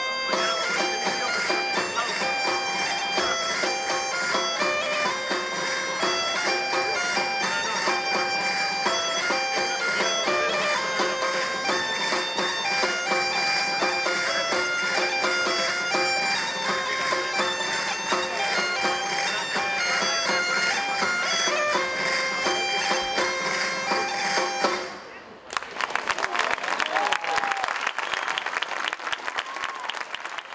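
Gaita (bagpipe) playing a lively dance tune over its steady drone, with a drum keeping a regular beat. The tune stops abruptly about 25 seconds in and applause follows.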